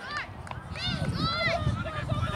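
Distant high-pitched shouts of young players calling across a football pitch, a few rising-and-falling calls about a second in, over a steady low rumble.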